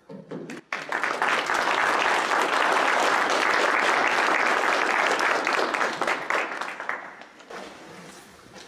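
Audience applauding. It starts suddenly about a second in and dies away near the end.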